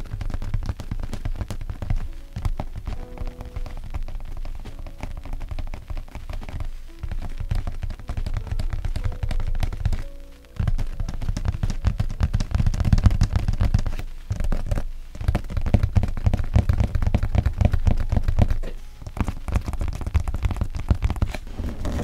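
Fingertips tapping quickly on the lid of a cardboard NovelKeys PBT Notion keycap box: a dense run of light knocks, with short pauses about ten seconds in and again near fifteen seconds.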